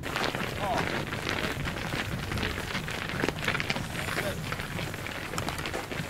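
Outdoor background noise: a steady rustling hiss with many scattered short clicks, under faint voices of people nearby.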